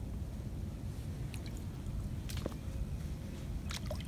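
Wind rumbling on the microphone, a low steady noise, with a few faint clicks.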